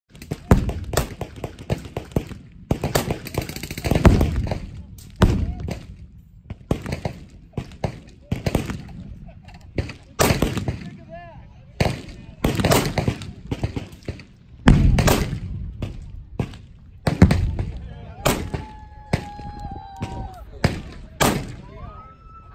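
Automatic gunfire from a firing line of machine guns: sharp shots and short bursts at irregular intervals, with a dense stretch of rapid fire around three to four seconds in.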